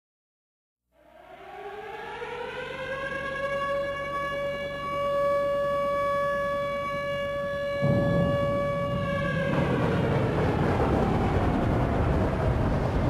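An air-raid-style siren winds up from silence about a second in, rising in pitch and then holding one steady note. Near eight seconds in a loud rushing noise comes in, and the siren fades out under it.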